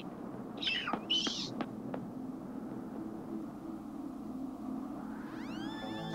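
Cartoon sound effects: two short high squawks about a second in and a couple of clicks, then a low steady rumble, and near the end a rising swell that opens into music.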